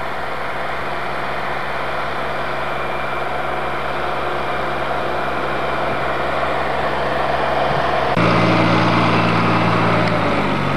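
Small garden tractor's engine running steadily as it pushes snow with a front blade, slowly getting louder as it approaches, then suddenly louder and deeper about eight seconds in as it passes close by.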